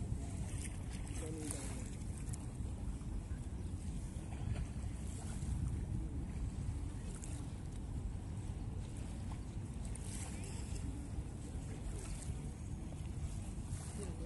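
Motorboat under way, its engine a steady low rumble, with wind buffeting the microphone.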